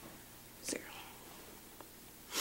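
A single word, 'zero', spoken softly about a second in. Otherwise quiet room tone with a steady low hum.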